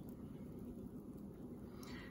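Quiet room tone with a faint low hum; a voice starts right at the end.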